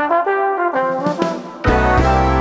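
Trombone playing a short phrase of several changing notes with the low backing dropped out, starting with a slide up. About one and a half seconds in, the full arrangement with deep bass and piano and synth backing comes back in under a held chord.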